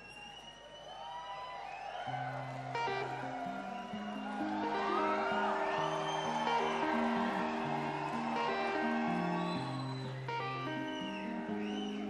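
Live rock band starting a song with an electric guitar: long held notes stepping from pitch to pitch enter about two seconds in and swell, with audience whoops over the top.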